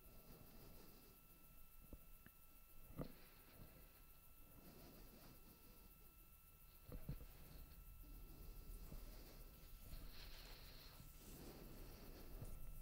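Near silence: a faint low rumble of background noise, with a soft knock about three seconds in and the noise growing slightly louder from about seven seconds in.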